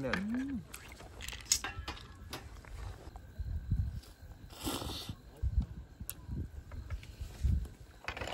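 Scattered light clicks and taps of metal tongs and chopsticks against a serving plate as steak is picked up and eaten, with a few soft low thumps of handling on the table. A short hum of a voice at the start and a brief breathy rustle near the middle.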